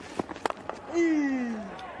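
Cricket bat striking the ball with a short sharp crack, followed about a second in by a long vocal exclamation that falls in pitch as the shot races away.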